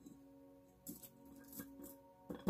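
Faint, steady background music tones, with a few light clicks and taps of small objects such as stones and crystals being handled on a table about a second in and again near the end.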